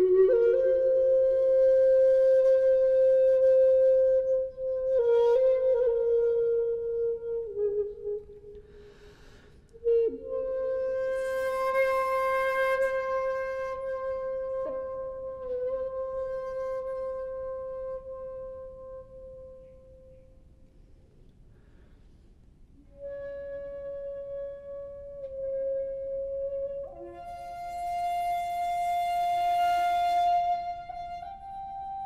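Solo shakuhachi, the Japanese end-blown bamboo flute, playing slow honkyoku: long held notes with pitch bends and breathy rushes of air on some notes. It fades to a quiet pause about twenty seconds in, then comes back and climbs to a higher note near the end.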